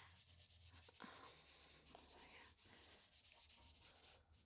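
Faint rubbing and scrubbing of a paintbrush on canvas paper as thinned oil paint is brushed on.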